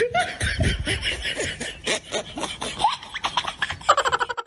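Laughter: a run of short, rapid vocal bursts with quick rising pitch.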